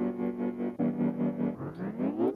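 A sampled keyboard-like chord loop playing back with a tremolo effect, the chord held, restarting just under a second in, then sweeping upward in pitch near the end as a transposition sweep.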